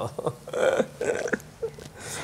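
A person's voice in short bursts, with no clear words.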